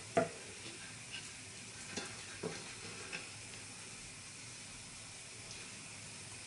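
Hot fat sizzling faintly and steadily in a frying pan, with a few light clicks of a spoon against a glass mixing bowl as the soft patty mixture is scooped.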